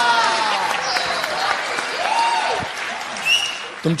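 Audience applause and cheering on the dubbed soundtrack, with a drawn-out voice tailing off at the start and a brief voice about two seconds in.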